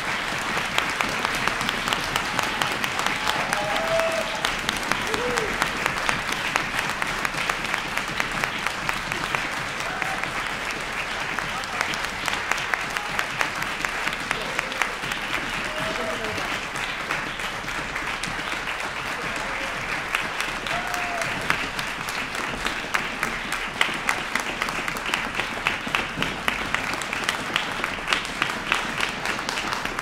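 Audience applauding steadily in a concert hall, with a few short calls from voices in the crowd.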